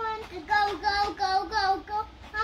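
A young child singing, one held note and then a string of about five short notes, each dipping slightly in pitch.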